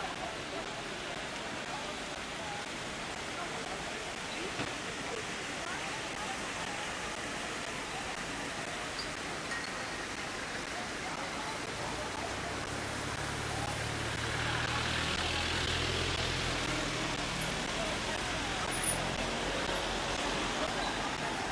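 Busy street ambience: a steady wash of distant crowd chatter and traffic. In the second half a car engine passes close by, its low rumble swelling for a few seconds and then fading.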